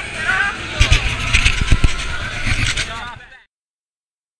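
People's voices close to an action camera, with low wind rumble and handling thumps on the microphone. The sound cuts off suddenly about three and a half seconds in.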